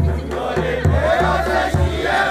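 Himachali folk music for a Nati line dance: voices singing a melody over a steady low drum beat, a little faster than one stroke a second.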